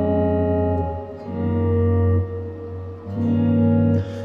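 Clean electric guitar chords ringing one after another, with the bass walking up to an E-flat seven chord over G. One chord is sounding at the start, a new one is struck just over a second in, and another just after three seconds.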